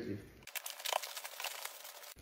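Bubble wrap and plastic packaging crinkling in a quick run of small crackles as a parcel is cut open and unwrapped.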